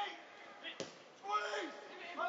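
A football kicked once, a single sharp thud a little under a second in, followed by a voice calling out across the pitch.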